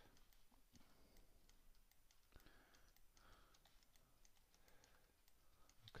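Near silence, with faint scattered clicks of a computer mouse and keyboard.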